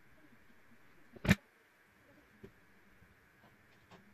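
One loud, sharp click about a second in, then a couple of faint ticks, over a steady faint hiss: the sound of an overloaded WAGO 2273 connector and its test rig ticking as they heat under a current far above the connector's 24 A rating.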